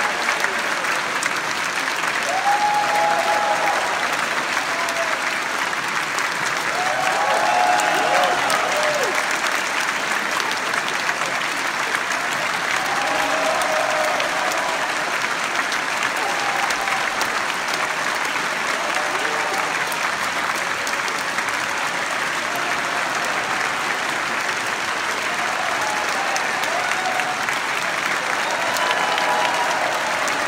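A concert audience applauding steadily, with scattered shouted cheers breaking through every few seconds.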